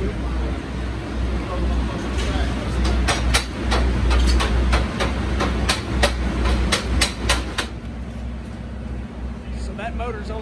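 A run of sharp metallic clicks and taps, several a second, from hand tools on a Top Fuel engine as the crew works on it, over a steady low hum. The clicks start a couple of seconds in and stop about three-quarters of the way through.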